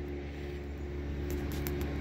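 Steady low mechanical hum, like a motor or engine running, with a few faint clicks in the second half.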